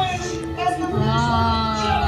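Dark-ride soundtrack music with a high, child-like voice holding one long sung note from about a second in.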